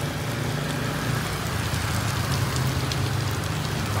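Heavy rain falling steadily on the street and surrounding surfaces, with a low steady hum underneath.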